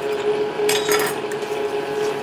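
A short hiss from an aerosol can of penetrating oil sprayed through a straw onto a rusted, seized knife handle joint, about a second in, with a light click or two after it. A steady hum runs underneath.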